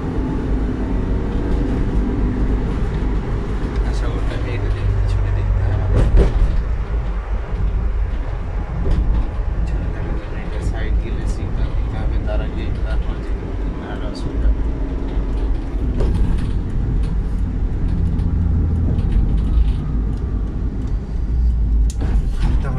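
Road and engine noise inside a moving vehicle's cabin: a steady low rumble with a hum that rises and fades at times, and a single knock about six seconds in.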